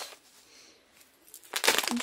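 Plastic-and-paper tea packet handled and crinkled. A quiet stretch comes first, then a dense burst of rustling in the last half second.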